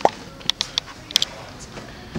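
A few light clicks and knocks, spread unevenly, as someone climbs out of an SUV's front seat through the open door.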